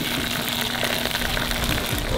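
Hot desi ghee tadka sizzling steadily as it is poured over cooked saag in a large steel pot.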